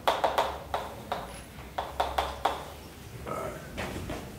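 Chalk writing on a blackboard: an irregular run of sharp taps, several a second, as the chalk strikes the board with each stroke.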